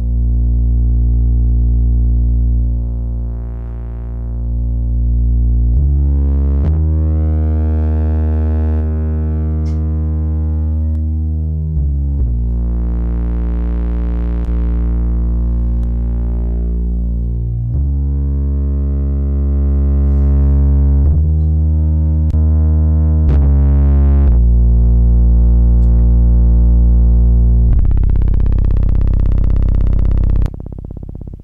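Synth bass line from a Dave Smith Tempest analog drum machine, run through an Elysia Karacter distortion and saturation unit, with its colour control swept. Long, low bass notes change pitch every few seconds, and their upper overtones swell and fade as the saturation colour changes, thickening the bass. It turns brighter and noisier near the end.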